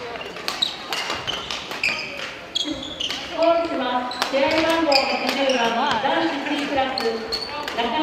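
Badminton play in a gym hall: sharp cracks of rackets striking the shuttlecock and short squeaks of court shoes on the wooden floor, over and over. From about three seconds in, voices of players and onlookers join in.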